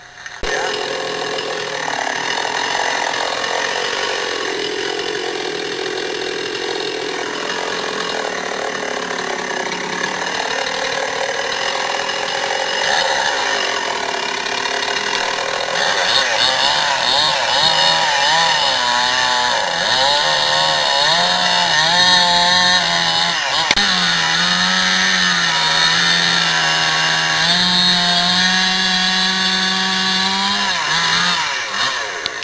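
Two-stroke chainsaw running at high revs under load, cutting into a big cedar trunk. It comes in suddenly near the start, and in the second half its pitch wavers up and down as it works in the cut.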